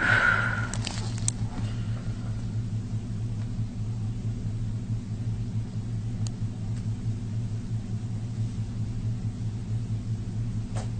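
A steady low hum, with a brief louder sound at the very start and a few faint clicks about one and six seconds in.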